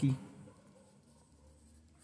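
A 6B graphite pencil scratching faintly on drawing paper as it shades in dark tones.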